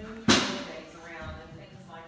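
A single loud slap of hands on a button of an interactive reaction-light wall, about a third of a second in, followed by faint voices.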